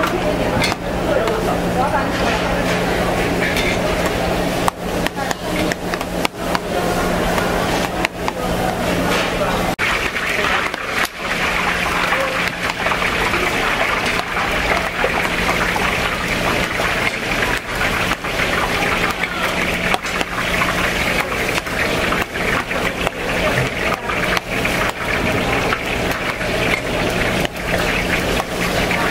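Busy market-stall ambience: background chatter of many voices with frequent clatter and knocks of utensils, over a steady low hum.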